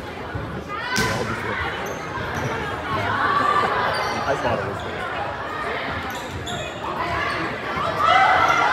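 A volleyball being hit during a rally, with one sharp smack about a second in. Shouts and chatter from players and spectators run under it.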